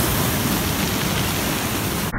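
Ship's wake waves breaking on a beach, a steady rush of surf and foaming water.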